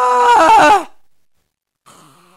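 A person's loud scream on an open "ah", held for about a second, then wavering and falling as it breaks off and dies away: a staged horror death scream. A much fainter vocal sound begins near the end.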